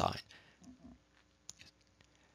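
The end of a man's spoken word, then a quiet pause broken by one sharp click about one and a half seconds in, followed by a couple of faint ticks.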